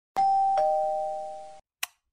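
A two-note doorbell-style 'ding-dong' chime, high then lower, each note ringing on and fading until both cut off suddenly after about a second and a half, followed by a short click.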